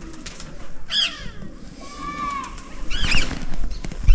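Birds calling: a few short, high, arched chirps and whistles, one about a second in, one around two seconds and a cluster around three seconds. A low rumble comes in near the end.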